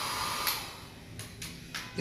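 Handheld electric hair dryer blowing on a bathed kitten's wet fur, then switched off about half a second in, its rushing noise dying away. A few faint clicks follow.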